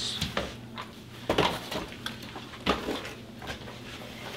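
Pistol boxes being lifted from a stack and set down on a glass counter: a few separate knocks and clatters, with one box handled as it is opened.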